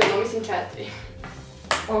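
A girl's voice trailing off, then a quieter stretch and a single sharp knock near the end.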